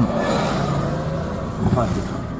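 Road and engine noise heard inside the cabin of a moving car, with a louder rushing swell in the first second that fades.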